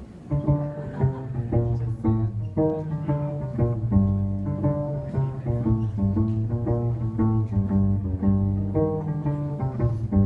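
Cello playing a song's instrumental introduction, a line of separate notes that starts just after the beginning.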